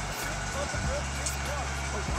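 A steady low hum, with a few faint short rising-and-falling tones over it.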